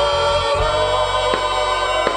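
A woman and a man singing a gospel hymn together into microphones, held notes over a steady band accompaniment with light drum strokes.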